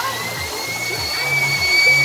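Rush of a park fountain's falling water under music with a low, stepping bass line, and a long, steady high-pitched tone held over both.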